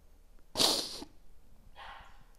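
A woman's sharp, noisy sniff lasting about half a second, then a fainter breath near the end: sniffling as she cries.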